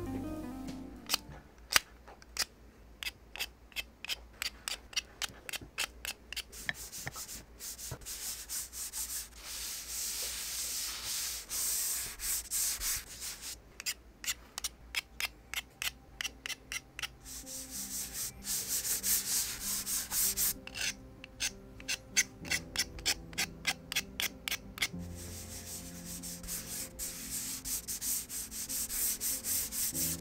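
Soft pastel sticks scratching and rubbing on paper in quick repeated strokes, several a second, broken by stretches of steadier rubbing as the pastel is worked across the sheet.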